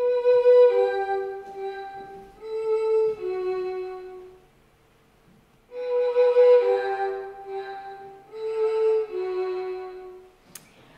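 A short phrase of four sustained notes on a solo instrument, played twice with a pause of about a second between. The first time it is plain. The second time it is processed with amplitude-modulation roughness, which thickens the tone with a rough, distorted grain around the notes.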